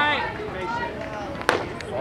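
A single sharp pop about one and a half seconds in: a baseball hitting the catcher's leather mitt. Spectators' voices are heard around it.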